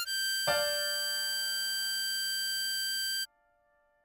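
Harmonica tone holding one long high blow note on hole 9 (G), joined by lower notes about half a second in. It cuts off sharply a little after three seconds, leaving a short silence before the next phrase.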